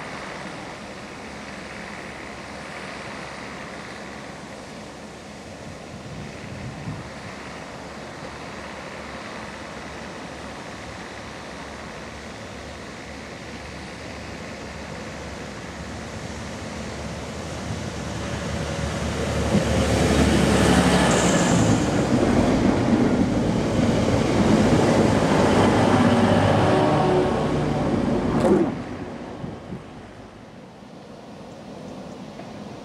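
Wind noise on the microphone, then a diesel multiple unit passenger train approaching, its engine and wheels growing loud over the last third and passing close by. The sound cuts off suddenly just before the end.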